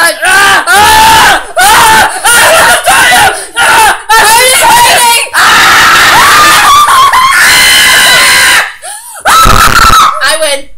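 Girls screaming in play, very loud: a string of short shrieks, then one long scream of about three seconds, and a last short shriek near the end.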